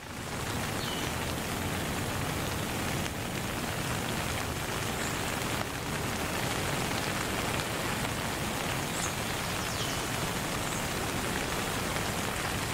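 Steady rain-like hiss at an even level, with a few faint, brief high chirps scattered through it.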